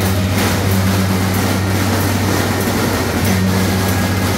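A string of firecrackers crackling in a dense, rapid run from just after the start until near the end, over a steady low hum.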